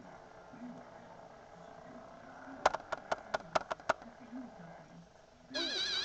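A portable DVD player stalled on a scratched disc: a quick run of about seven sharp clicks, then near the end playback resumes through its small speaker with a loud warbling electronic sound.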